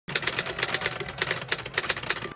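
A rapid, uneven clatter of sharp clicks, about a dozen a second, that starts and stops abruptly.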